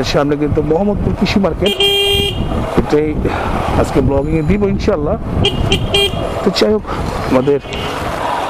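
A vehicle horn honks for about half a second around two seconds in, with short toots again near six seconds, over a voice talking and street traffic.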